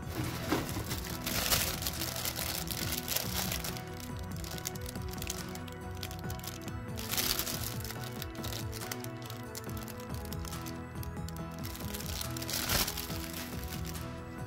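Clear plastic bags around plastic model-kit runners crinkling as they are handled, in bursts about a second in, around seven seconds in and near the end, over steady background music.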